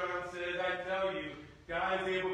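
A man's solo voice intoning in held, pitched tones, chanting or singing rather than plain speech, with a short break about one and a half seconds in.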